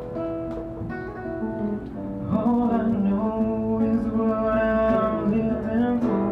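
A solo acoustic guitar played live, with a man singing long held notes over it. It grows louder a little over two seconds in.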